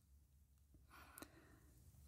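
Near silence: faint room tone with a soft intake of breath about a second in and a small click in the middle of it.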